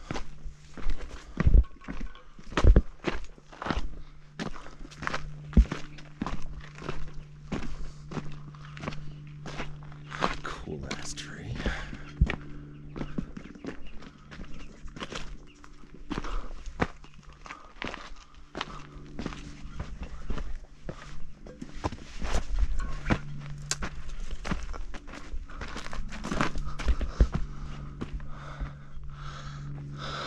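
Footsteps on a loose rocky dirt trail: a quick, irregular run of scuffing steps and stone knocks, loudest in the first few seconds, over a steady low hum.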